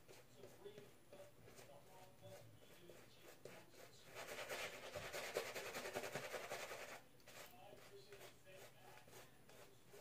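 Shaving brush working soap lather over the face and neck, bristles rubbing wetly against stubble. It is faint, growing louder for about three seconds in the middle as the brush works harder.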